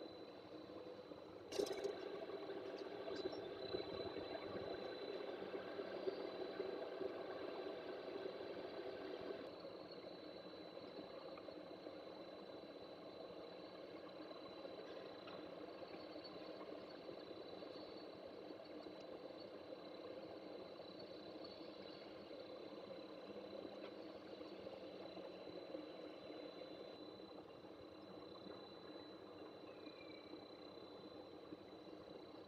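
Steady, faint mechanical hum with a thin high whine. A sharp click comes about one and a half seconds in, and the hum is louder after it until it drops back suddenly near the tenth second.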